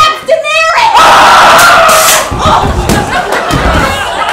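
Several people yelling and screaming at once. A short yell swells into one loud, sustained outburst lasting over a second, followed by a run of low thuds.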